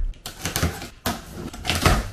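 A cardboard shipping box being opened by hand: packing tape ripped off and cardboard flaps scraping, in a few scratchy strokes, the loudest near the end.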